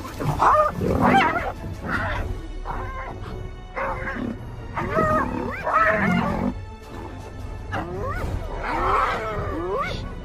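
Spotted hyenas calling in a frantic chorus of yelps and giggle-like cries as a lion charges them off their kill, with rising whoop-like calls in the last few seconds. A lion's growls are mixed in.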